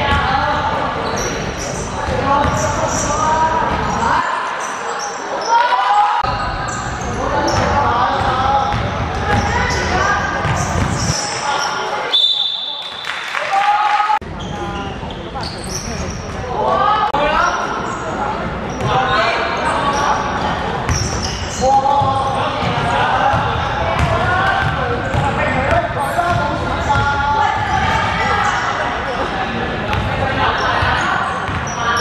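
Indoor basketball game: a ball bouncing on a hardwood court and players' voices, echoing in a large sports hall.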